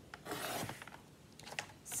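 Sliding-blade paper trimmer cutting a sheet of scrapbook paper: one rasping stroke of about half a second as the blade slider runs along the track, followed by a few light clicks near the end.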